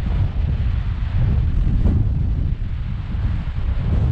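Wind buffeting the camera microphone: a loud, steady, rough low rumble with a fainter hiss above it.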